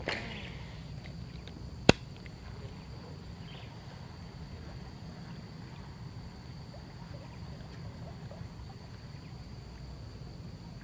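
A lure cast with a baitcasting rod and reel: one sharp, loud click about two seconds in, then a few faint ticks over a steady low rumble.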